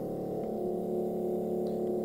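Aircrete foam generator running on compressed air while making foam: a steady, even machine hum with several held pitches. The line pressure reads 40 PSI while it runs.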